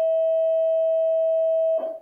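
A loud, steady, single-pitched electronic beep tone held for about three seconds, cutting off shortly before the end.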